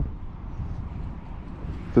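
A steady rush of distant motorway traffic.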